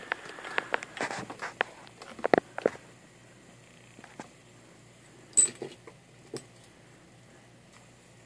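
Handling noise on a workbench: a quick run of light clicks and knocks as the camera is moved and repositioned, then a few scattered sharper clicks, the loudest about halfway through, as tools are picked up.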